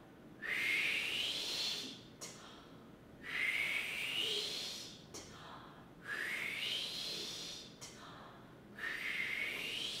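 A woman doing a breath-support vocal warm-up four times: each a long forceful exhale that starts as a pressurized 'wh' and turns into a hiss rising in pitch, cut off by a sharp aspirated 'T', with a quick breath taken between each.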